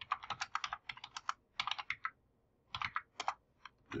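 Typing on a computer keyboard: quick runs of keystrokes with short pauses between them, entering a command.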